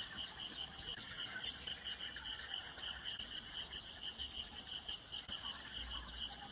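Insects chirping in an even, rapid pulse of about five chirps a second over a constant high-pitched buzz.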